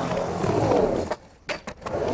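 Skateboard wheels rolling across a ramp transition, a steady rumble for about a second that fades. A few sharp knocks of the board or trucks on the ramp follow near the end.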